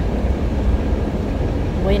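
Passenger train running, a steady low rumble heard from inside the carriage.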